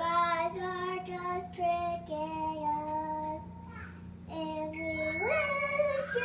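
A little girl singing a song in long held notes, with a slide up in pitch about five seconds in.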